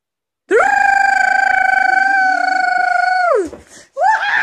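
A high voice holds one long, steady note, beginning about half a second in, sliding up into it and falling off at the end after about three seconds.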